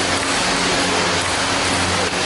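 Loud, steady rushing noise with a low hum underneath, with no distinct ball hits standing out.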